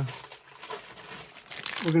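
LEGO Minifigures foil blind bags crinkling as a handful of them is shuffled by hand, with a louder crinkle near the end.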